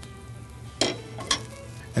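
Hot frying pan sizzling with an even hiss under steady background music, and two short sharp sounds a little after halfway, likely from the spatula or pan.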